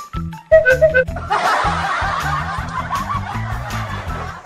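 Background music with a steady rhythmic bass line. About half a second in comes a short, loud pitched sound effect, then laughter over the music from about a second and a half in.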